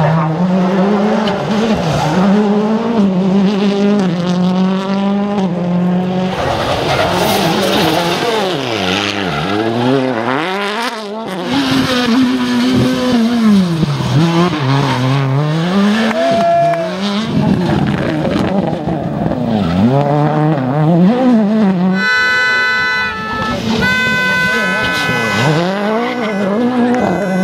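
Rally cars' engines revving hard, dropping away under braking and climbing again out of a tight hairpin, several cars in turn, with tyre squeal. Near the end a set of steady high-pitched tones joins in.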